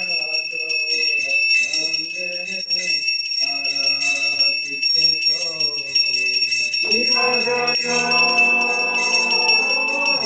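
Devotional kirtan: a male voice singing melodic phrases with held notes over small hand cymbals ringing steadily throughout. About seven seconds in the singing grows fuller and louder.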